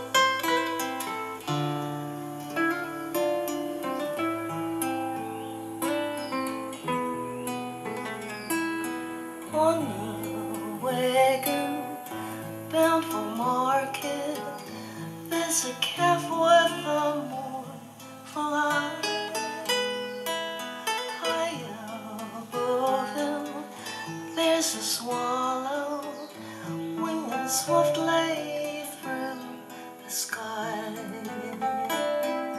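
Nylon-string classical guitars played in a folk style, strummed and plucked, with a voice singing along.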